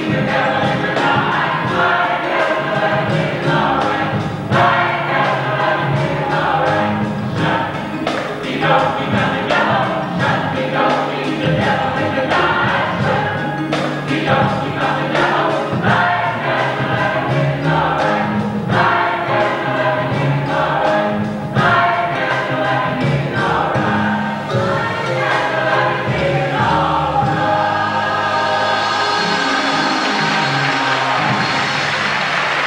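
Gospel choir singing in full voice, the voices settling into a long held chord near the end.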